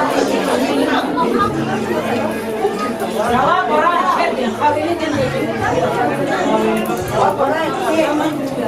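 Several people talking over one another at once: a continuous, loud hubbub of overlapping conversation with no single voice standing out.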